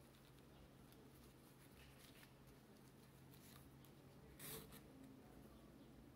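Near silence with faint rustling of ribbon and sewing thread as hand-held thread is wrapped around the middle of a ribbon bow and knotted, with one brief louder rustle about halfway through.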